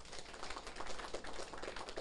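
Faint room noise from a seated audience: many small clicks and rustles, with no clear speech.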